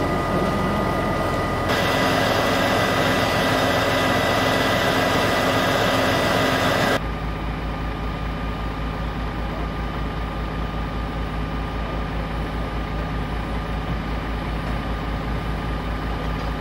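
Steady engine noise with a loud rushing hiss over it, which stops abruptly about seven seconds in; then a vehicle engine idling with a low, even throb.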